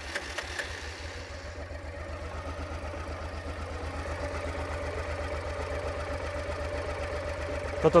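1990 Honda XRV750 Africa Twin's V-twin engine idling steadily, just after being started. The exhaust is quiet, so mostly the engine's own mechanical running is heard.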